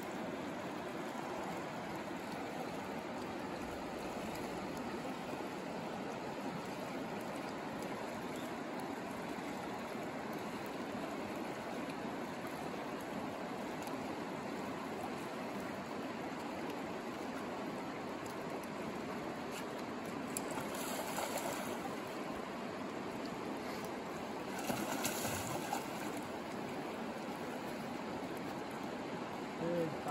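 Shallow river current running steadily over a riffle, an even rush of water throughout. Two brief louder noises come about two-thirds of the way in and again a few seconds later.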